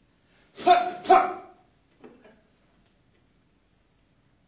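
Two short, loud barked vocal shouts in quick succession, about half a second apart, followed by two much fainter ones about a second later.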